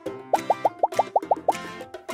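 Cartoon sound effect: a quick run of about eight short blips, each rising in pitch, about seven a second, over light background music.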